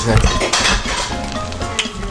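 A metal spoon scrapes and stirs bibimbap in a hot stone bowl (dolsot), with short repeated scrapes against the stone and the rice sizzling on the hot bowl.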